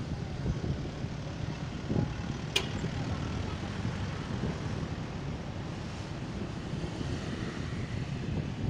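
Riding noise from a motorcycle on the move: a steady low engine drone with road noise, and a single sharp click about two and a half seconds in.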